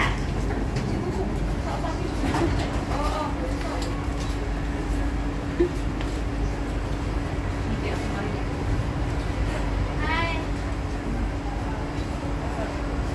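Cabin ambience of a Kawasaki-Sifang C151B MRT train standing at a platform with its doors open: a steady low rumble and hum from the idle train, with passengers moving about.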